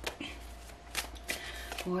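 A deck of tarot cards shuffled overhand between the hands: a few soft, separate card clicks and slaps.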